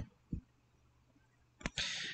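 A few faint, sharp taps of a stylus on a tablet while handwriting, with near silence between them, and a short hiss near the end.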